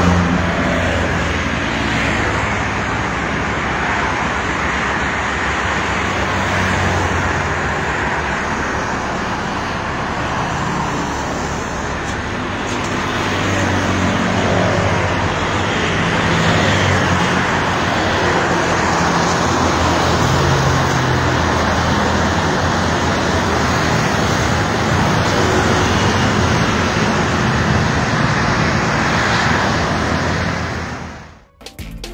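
Steady traffic on a multi-lane toll road, cars and a bus passing at moderate speed: a continuous tyre and engine rumble, with single vehicles' engine hum rising and fading as they go by.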